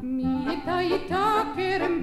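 A woman singing an Israeli folk song with a wide vibrato over instrumental accompaniment, her voice entering about half a second in after a held note.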